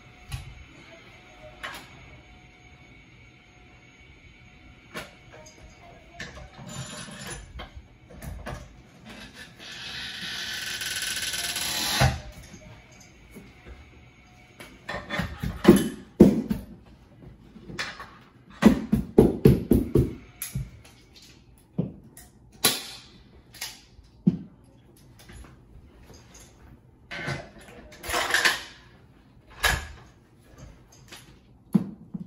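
Carpet stretching work with a power stretcher: scattered knocks, clicks and scrapes of tools and carpet against the wall edge. A rising rush of noise builds from about ten seconds in and cuts off suddenly, and later come quick runs of thumps.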